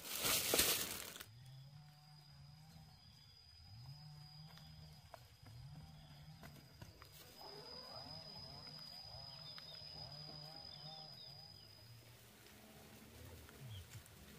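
A plastic bag crinkling loudly for about the first second. After it, faint outdoor sound: a steady high thin tone, low animal calls repeating about once a second, and a few chirps in the middle.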